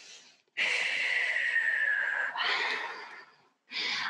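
A woman breathing deeply and audibly: a long breath with a faint whistle that slides slightly down in pitch, then a second, shorter breath that fades away.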